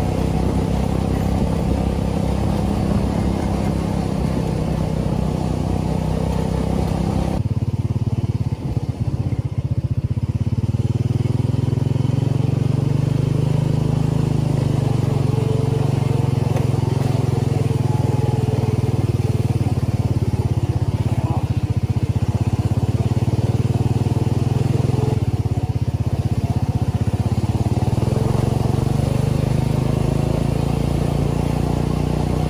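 The buggy's swapped-in 440cc engine running under load as it drives along a dirt track, a steady low drone. About seven seconds in the engine note shifts abruptly lower, with a brief dip in level just after.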